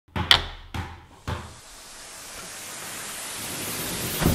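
Three heavy thuds in the first second and a half, the sound of car doors being shut, followed by an even hiss that swells steadily louder.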